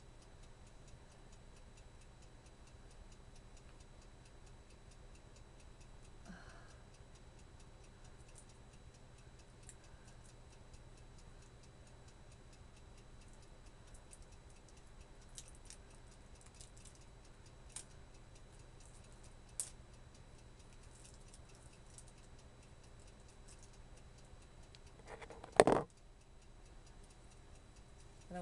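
Faint, evenly spaced ticking throughout, with scattered small clicks of scissors cutting into small plastic packaging. One sharp knock near the end, much louder than anything else.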